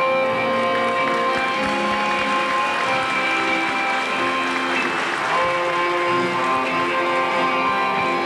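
Live accordion music for a folk line dance (kolo), with held chords and a running melody. A brief swell of audience clapping comes about five seconds in.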